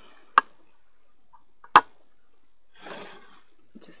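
Two sharp clicks about a second and a half apart, the second the loudest, then a short scratchy rustle near the end: a small plastic tub and loose substrate being handled.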